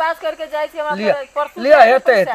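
Speech: a person talking, with no other sound standing out.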